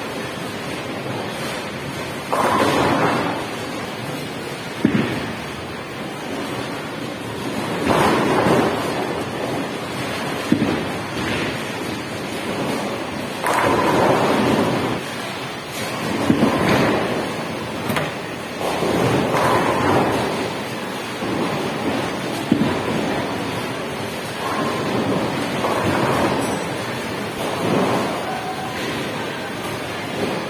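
Bowling alley din: bowling balls rolling down the lanes in repeated rumbling swells and pins being struck, with several sharp knocks, over a constant noisy background.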